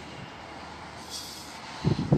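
Steady city background noise with a brief hiss about a second in. Near the end come loud, low, irregular thumps on the microphone.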